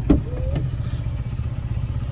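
Steady low rumble of a car driving over a rough road, heard from inside the cabin, with a short sharp knock just after the start.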